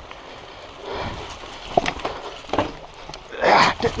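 Mountain bike riding over roots on a rough, eroded trail: scattered knocks and clicks from the bike and the rider's hard breathing. Near the end comes a loud sigh as he fails to clear the section.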